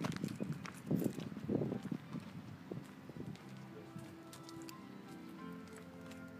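Several dull thumps over the first two seconds, footsteps and phone handling while walking. Then soft background music with long held notes comes in about halfway and carries on.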